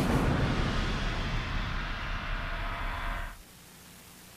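Closing sting of a TV sports bumper: a dense, rumbling wash of music and sound effects with a heavy low end, which cuts off abruptly about three and a half seconds in, leaving a quiet gap.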